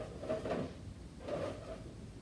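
An inflated latex balloon being handled and set down on a wooden floor: two short rubbing, rustling sounds about a second apart.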